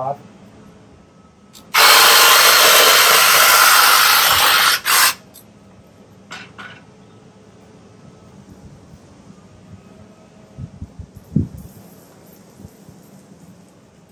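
Ryobi 40V cordless hedge trimmer's electric motor and blades running in one loud, steady burst that starts about two seconds in and stops about three seconds later.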